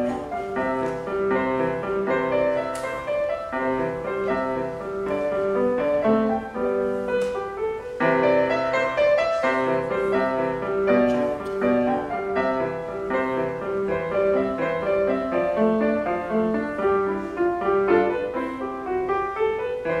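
Grand piano played solo, a continuous run of notes in a classical-style piece.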